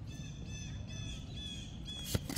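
A bird calling in the background: a quick series of short, high notes, about five a second, starting about half a second in.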